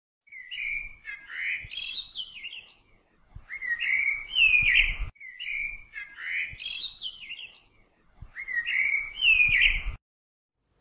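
Birdsong: a run of gliding, chirping whistled calls. The same phrase of about five seconds plays twice, breaking off suddenly halfway through and again at the end.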